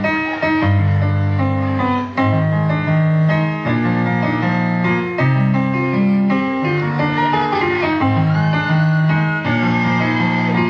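Keyboard music: a run of held piano-like notes and chords over a moving bass line.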